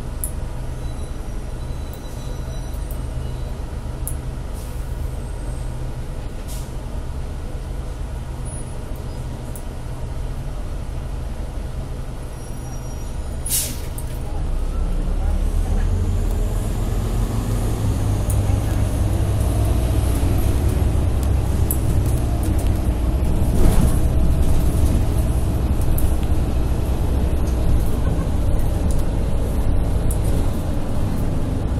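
Interior of a city bus: the engine rumbles steadily at a stop, a short hiss of air comes about halfway through, and the engine then works louder and rises in pitch as the bus pulls away.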